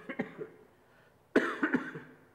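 A person coughing in two short bouts of several coughs each, one right at the start and one about a second and a half in.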